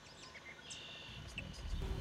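Faint outdoor ambience with scattered short, high bird chirps and one held high note about halfway through; a low rumble rises toward the end.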